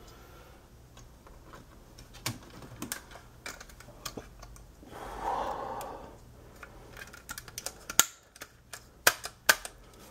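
Scattered clicks and taps of a laptop's optical DVD drive being handled and snapped back together, with a few sharper, louder clicks near the end.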